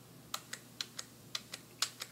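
Computer keyboard keys tapped repeatedly: faint light clicks in pairs, about two pairs a second. These are repeated undo keystrokes (Ctrl+Z) stepping back through edits in the design software.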